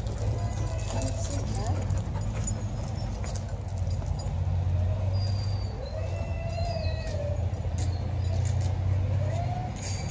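A dog whining, two drawn-out whines that rise and fall, one near the middle and one near the end, over a steady low rumble and a few faint high chirps.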